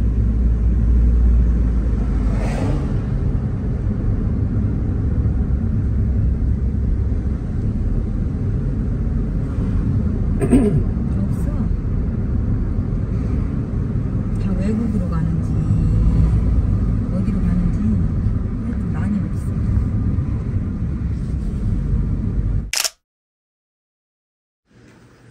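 Steady low road and engine rumble heard inside a car's cabin as it drives slowly, with quiet voices over it. The sound cuts off suddenly near the end.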